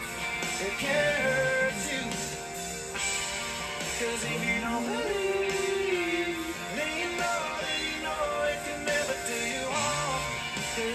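Country song from a live studio band recording: guitars and drums under a gliding melody line, with a male voice singing.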